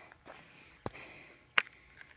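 A person's breathing through the nose while walking, faint, with two sharp clicks, the louder one a little past halfway.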